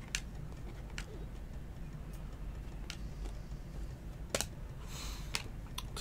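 Panini Select football cards being flipped through by hand: a few faint, scattered clicks as the card edges tap together, and a brief swish of a card sliding across the stack near the end, over a low steady hum.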